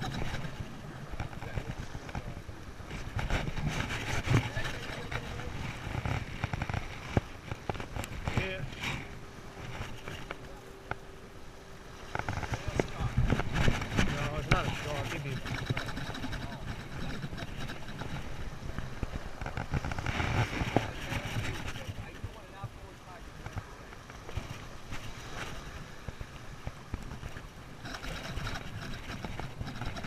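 Small waves washing in at the water's edge, with wind rumbling on the microphone and swelling louder a few times.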